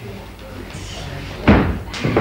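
A wrestler's body hitting the ring mat: one loud, sudden thud about one and a half seconds in, with a short boom ringing after it.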